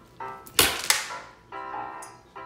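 A sharp bang about half a second in, with a second smaller crack just after it, over steady background music; it marks the toy figure's fall to the floor.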